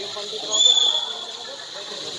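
A referee's whistle gives one short blast, a clear high tone of under half a second about half a second in, over faint crowd voices.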